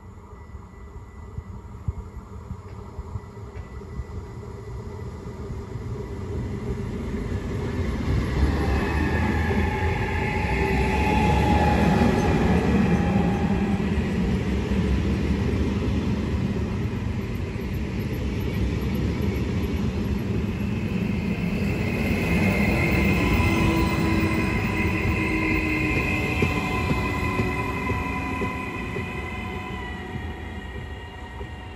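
Double-deck regional electric train (Trenitalia Rock) approaching and running past close by, its rumble on the rails growing to a peak about twelve seconds in, with high whining tones over it. A second build-up follows as a train nears the platform, with a motor whine that falls in pitch as it slows.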